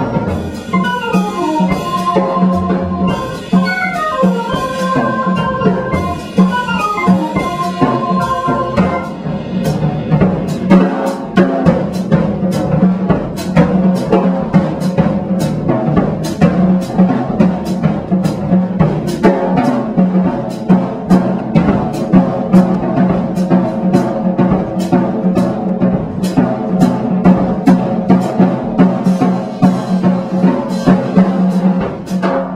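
Live jazz organ trio in 5/4 time: electric organ, guitar and drum kit play the melody together, then from about nine seconds in the drums take over with busy strokes and cymbal hits while the organ keeps a low repeating bass line underneath.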